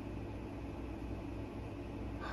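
Steady low hum and faint hiss of room noise, with no distinct sounds standing out.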